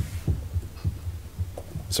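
Irregular soft low thumps and knocks, several a second, picked up by a desk microphone, over a steady low hum.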